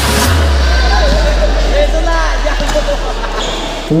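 Indoor basketball court sounds: scattered voices of players and spectators and a few short sneaker squeaks about halfway through, over a low bass note from background music that slowly fades.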